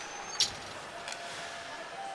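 Hockey arena crowd murmur during live play, with one sharp knock about half a second in.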